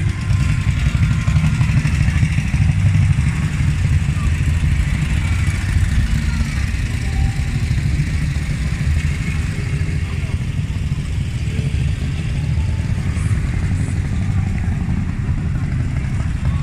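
Several motorcycles, old vintage bikes among them, riding slowly past one after another with their engines running in a steady low rumble.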